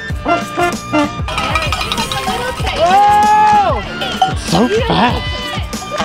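Spectators yelling and whooping at passing racers, with one long drawn-out whoop about three seconds in and more shouts a little later.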